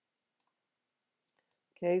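A few faint, sharp computer mouse clicks, three of them close together about a second and a half in. Near the end a woman's voice says "Okay", louder than the clicks.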